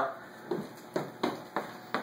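Footsteps: about five irregular thuds, roughly a quarter to half a second apart.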